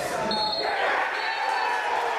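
A football struck with a thud, followed by spectators shouting.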